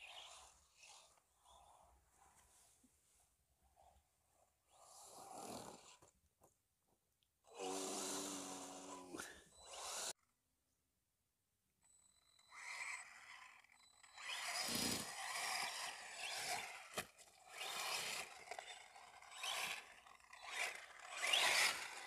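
Arrma Senton 3S BLX RC short-course truck driving over grass, its electric motor whining in uneven surges with the throttle as the tyres run over the turf. The sound cuts out completely for about two seconds halfway through.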